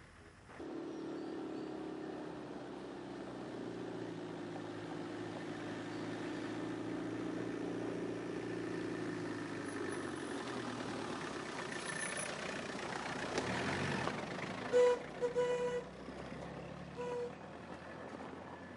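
A car engine running steadily as the car drives. Near the end there is a brief rush of noise, followed by a few short honks of a car horn.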